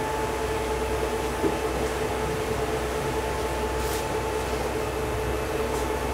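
Steady machine hum, a constant mid-pitched tone over a low rumble, with one faint click about four seconds in.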